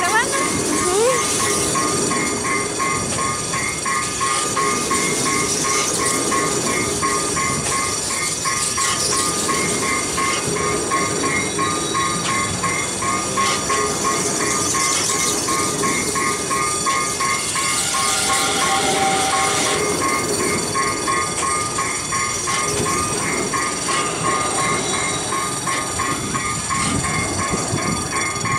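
CSR multiple-unit train cars rolling slowly past at close range over a level crossing, wheels and running gear rumbling and clattering, with a brief wheel squeal partway through. An evenly repeating crossing warning bell rings throughout.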